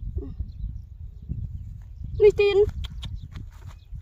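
Steady low rumble of wind buffeting the microphone, with a few light clicks in the second half.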